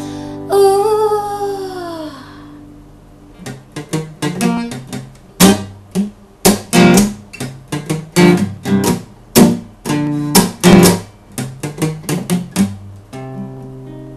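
Acoustic guitar in an instrumental break. About half a second in, a held note slides down in pitch and fades. A run of picked notes follows, a few a second, ending on a chord that rings on.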